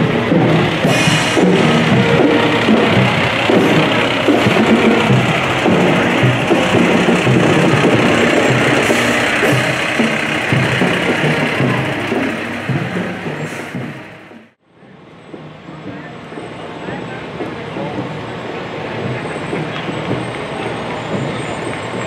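Outdoor parade sound of music mixed with voices, fading down almost to silence about fourteen and a half seconds in. It comes back as a quieter, steady street noise.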